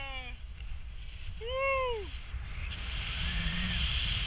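A person's whoop: one call that rises and falls in pitch, about a second and a half in, just after the falling end of an earlier cry. Under it runs a steady rumble of airflow on the microphone of a paraglider in flight, and a higher wind hiss grows louder near the end.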